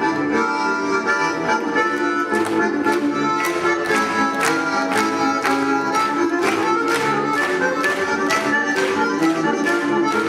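Accordion playing sustained chords, with a steady rhythm of sharp accents about two a second from about two seconds in.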